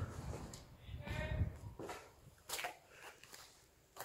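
Faint footsteps on a rubble-strewn concrete floor, a few soft scuffs and knocks, with a faint distant voice calling out about a second in.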